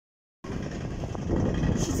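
Wind buffeting a phone's microphone: an irregular low rumble that starts about half a second in.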